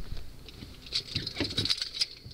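Raindrops pattering on a car: a quick, irregular run of light taps and ticks, busiest in the second half.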